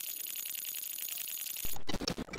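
Glitch-style intro sound effect for a logo animation: a dense, rapid crackle like static, with faint thin high whistles over it. A louder burst of noise comes near the end and cuts off abruptly.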